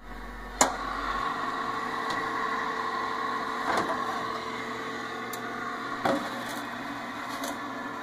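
A convection toaster oven, still switched on, runs with a steady hum. Its door is pulled open with a sharp click about half a second in, and a few light knocks follow as the metal pan is drawn out.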